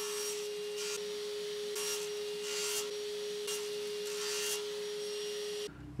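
Table saw running with a steady hum while short maple pins are cut to length in a crosscut jig: a series of brief cutting bursts about a second apart. The sound stops suddenly near the end.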